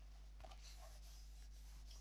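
Near silence: room tone with faint rubbing and a small click as a leather and coated-canvas pouch is handled.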